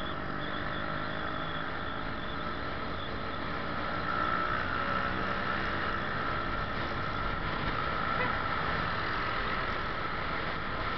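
Motor scooter running at riding speed in traffic: a steady mix of engine and wind noise on the rider's camera, a little louder from about four seconds in.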